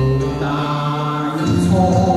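A Cantonese pop song performed live with a microphone over a backing track, a woman holding a long note; the accompaniment moves to new notes about a second and a half in.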